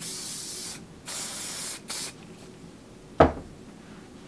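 Spray wax (Kevin Murphy Touchable) misted from a can onto hair in three hissing bursts, two long and one short. Then a single sharp knock about three seconds in.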